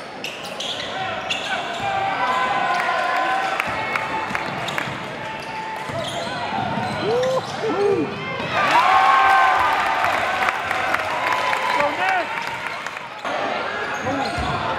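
Live basketball game sound in a gym: crowd voices and shouts over the ball bouncing on the hardwood court, with a few short squeaks from shoes. The crowd grows louder about halfway through as a shot goes up at the rim.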